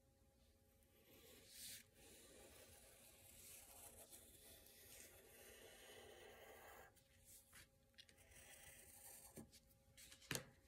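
Very faint scratching of a wooden pencil drawing light lines on paper: a short stroke about a second in, a longer stroke lasting several seconds, then a few short strokes near the end.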